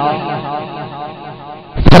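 A man's preaching voice echoing through a loudspeaker system and fading away over about a second and a half in a pause, before he speaks again near the end.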